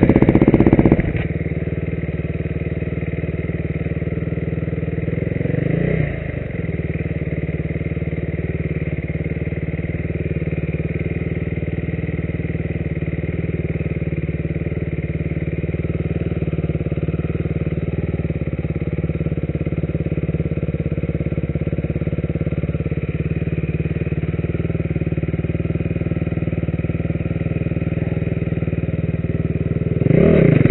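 Enduro motorcycle engine idling steadily after a loud rev that drops away about a second in, with a brief throttle blip about six seconds in and a rev starting again right at the end.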